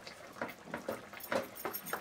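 Flat spatula stirring and mashing thick carrot-beetroot halwa with lumps of mawa in a pan, scraping through the mixture in short, irregular strokes.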